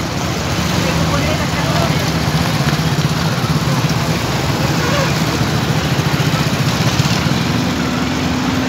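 Vehicle engines idling close by in stalled traffic, a steady low pulsing hum under general road noise, with a slightly higher engine note joining near the end.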